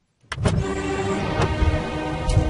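Animated logo intro music: silence, then about a third of a second in a sudden deep rumbling hit opens into sustained music with sharp accents.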